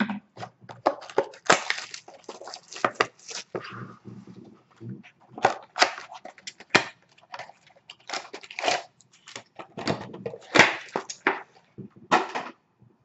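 A sealed hockey card box being opened by hand: irregular crinkling, crackling and tearing of its plastic wrap and packaging, with small handling knocks.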